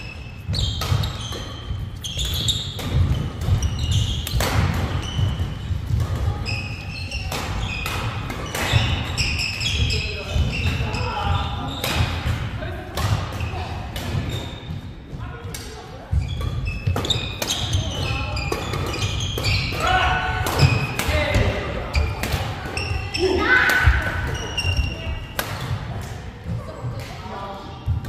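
Badminton doubles rally in a large hall: sharp racket-on-shuttlecock hits in quick succession, with players' footsteps thudding and shoes squeaking on the wooden court. Players' voices call out, most near the end.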